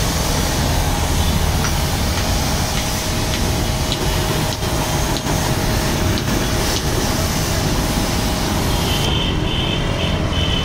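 3 hp high-pressure washer running steadily, its jet hissing as it sprays a scooter's body and floorboard. The highest part of the hiss drops away about nine seconds in, as the jet stops.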